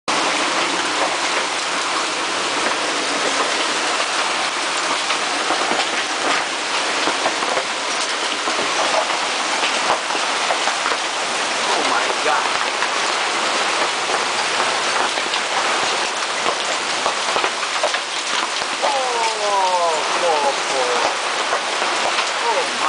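Heavy rain pouring down on a sailboat's deck and canvas bimini, a steady dense hiss. A few brief falling tones sound near the end.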